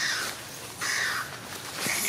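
Three short, harsh animal calls about a second apart, the last running on past the end.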